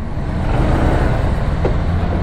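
Honda PCX scooter running as it rolls slowly over paving, a steady rumble.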